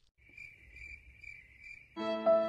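Faint, steady high-pitched insect chirring with a light regular pulse.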